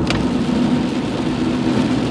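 Steady cabin noise of a car being driven: an even engine and road hum with a faint low drone.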